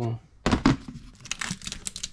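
Clear plastic storage tote being opened: the lid comes off with a loud clatter about half a second in, then the plastic bags of loose toys inside crackle and rustle as they are handled.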